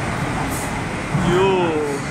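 Subway train pulling out of an underground station at speed, a steady rush of wheels and carriages running past the platform.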